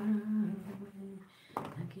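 A woman humming a slow tune in long held notes, which fades briefly near the end before a breath and the start of a spoken word.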